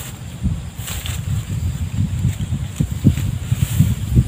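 Wind buffeting the microphone: an uneven low rumble that rises and falls in gusts, with light rustling.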